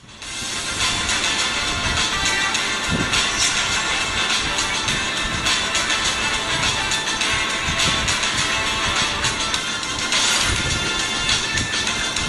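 Music with percussive beats from a promotional video, played through the Vivo V5s smartphone's single loudspeaker.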